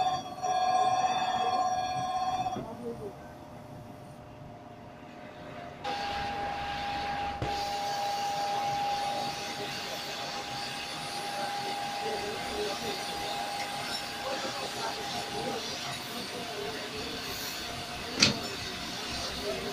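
Crankshaft grinding machine, its grinding wheel cutting a crankshaft journal with a loud, steady high whine that stops about two and a half seconds in. After a few quieter seconds the machine takes up a second steady whine about six seconds in, which runs for about ten seconds.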